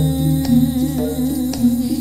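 Jaranan accompaniment music: a held low tone under a melody that steps from note to note, with a few sharp percussion strikes. The low tone drops away at the end.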